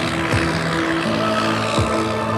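Background electronic dance music: a steady synth line with a beat, with a drum hit falling in pitch about a third of a second in and again near the end.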